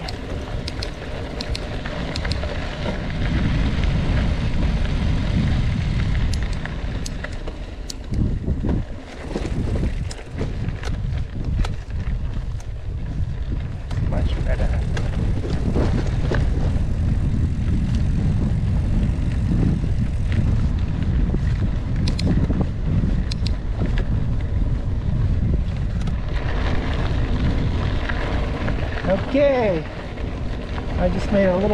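Wind rumbling on the microphone and the tyres of a loaded mountain bike rolling over gravel and dirt, with scattered sharp clicks and rattles from stones and the bike. The noise dips briefly twice near the middle.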